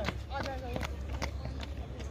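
Running shoes slapping on an asphalt road as runners pass close by, a sharp footfall about two to three times a second, over a steady low rumble and voices talking.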